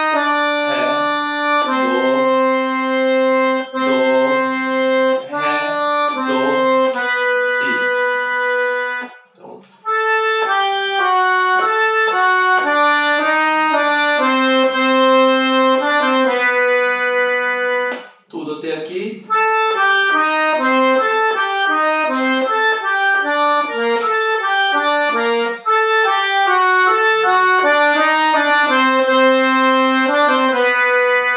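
A 'Super Dominator' piano accordion playing a stepwise melody on its treble keyboard, phrase by phrase. There are brief breaks about nine and eighteen seconds in, and the notes are faster in the later phrases.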